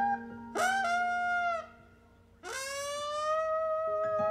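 Live band music: two long held notes, each swooping up in pitch at its start, with a near-silent break between them.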